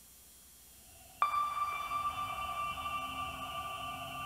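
A sonar-like electronic ping strikes suddenly about a second in, then rings on as a steady chord of several held tones in a film soundtrack.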